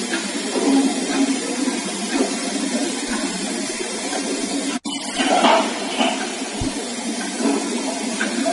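Loud, steady hiss of a heavily amplified audio recording, with a sudden momentary dropout about five seconds in and a short louder burst just after it.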